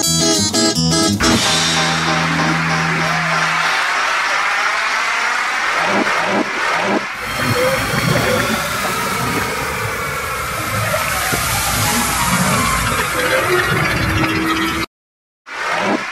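Acoustic guitar strumming breaks off about a second in. Ocean surf follows, washing up on a sandy beach in a steady rush.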